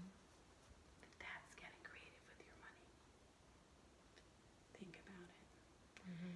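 Near silence, with a stretch of faint whispering about a second in and a short faint murmur near the end.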